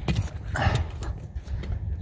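Someone climbing a motorhome's metal roof ladder onto the roof: a few knocks of feet and hands on the ladder and roof, over a low rumble of wind on the microphone.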